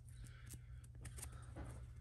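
Faint clicks of a small stack of chrome trading cards being handled and slid against each other, over a low steady hum.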